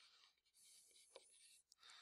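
Very faint scratching of a stylus writing on a tablet screen, with a few light ticks.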